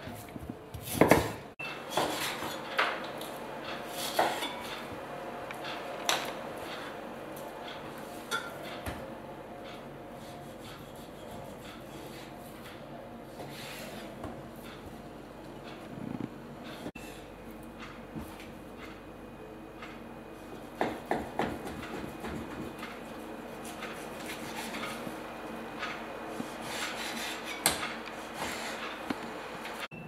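Kitchen knife cutting raw pork neck on a wooden chopping board, with irregular knocks and scrapes of the blade against the wood and light clinks as the knife and pieces are handled.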